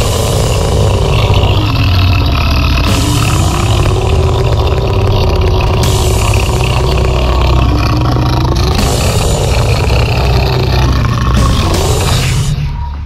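Harsh noise music: a loud, dense wall of distorted noise over a heavy low rumble, its upper hiss shifting abruptly about every three seconds.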